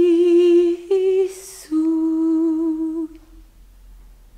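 A single voice holding long, wordless sung notes with vibrato, with a quick breath drawn between them; the voice stops about three seconds in.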